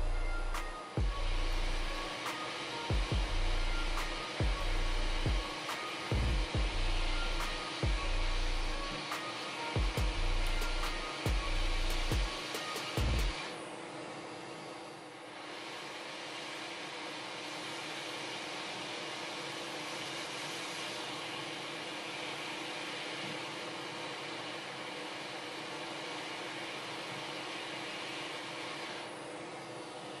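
Hot air rework station blowing a steady hiss at 350 °C and 50% airflow while metal shields are desoldered from a phone motherboard. Background music with a heavy bass beat plays over it and stops about 13 seconds in, leaving only the air hiss.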